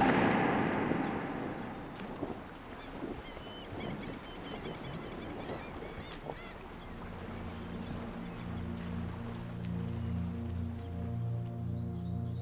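A loud rushing noise fades away over the first couple of seconds, leaving faint outdoor ambience with small high chirps, like birds, and scattered clicks. About eight seconds in, a low, steady ambient synth drone fades in.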